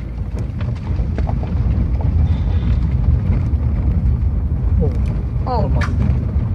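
Car driving over a rough dirt road, heard from inside the cabin as a loud, uneven low rumble.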